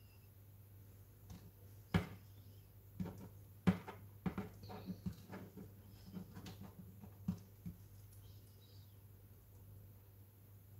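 Irregular light taps and clicks of a spoon as melted chocolate is drizzled over a meringue roll, the sharpest about two seconds and nearly four seconds in, dying away near the end. A steady low hum lies underneath.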